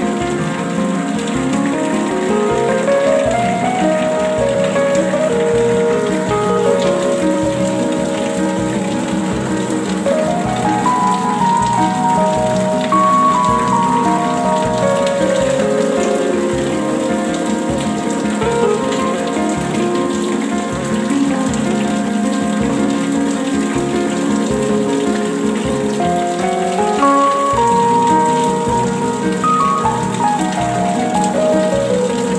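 Steady rain falling, with slow music laid over it, its notes stepping and gliding up and down.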